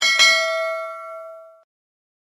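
Bell-ding sound effect for the end screen's notification bell: a bright struck chime that rings out and fades away over about a second and a half.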